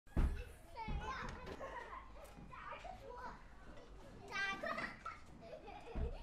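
Children's voices chattering and calling out together, with louder high-pitched calls about one second in and again about four and a half seconds in.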